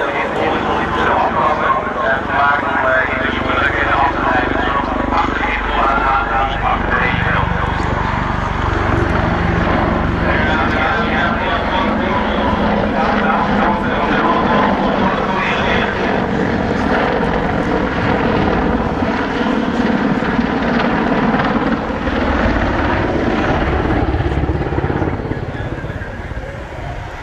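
Boeing AH-64D Apache attack helicopter flying a display, the rotor and twin turboshaft engines running loud and steady.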